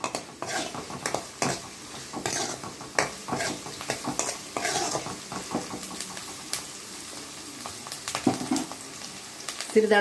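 A steel ladle scraping and clinking against a metal kadai as chopped shallots and dried red chillies are stirred, frying in oil with a soft, steady sizzle.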